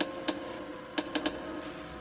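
Television interference static: a steady hiss broken by about six sharp pops and crackles, over a faint held background tone.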